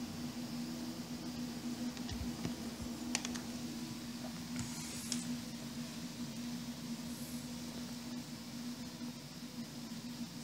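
Quiet room tone with a steady low hum, and a few faint clicks and rustles of a handheld phone being handled, about two, three and five seconds in.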